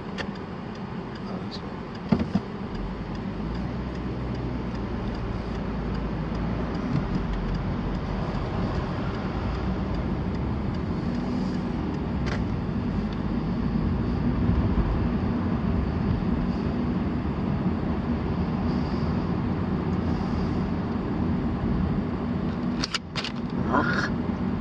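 Car interior: the car's engine and road noise as it pulls away and drives through town, a steady low rumble that builds slightly over the first dozen seconds as it gathers speed. A single sharp click about two seconds in.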